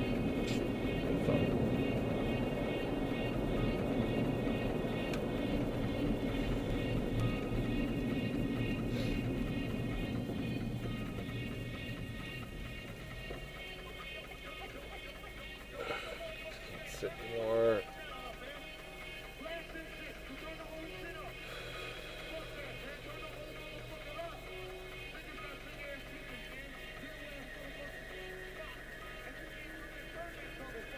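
Car cabin noise while driving: a steady low rumble of road and engine that fades as the car slows and comes to a stop, about halfway through. Just after it stops, one short loud sound with a wavering pitch stands out.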